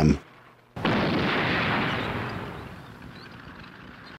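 A single heavy blast, like a cannon shot or shell explosion, starting suddenly about three-quarters of a second in and dying away slowly over the next two seconds or so.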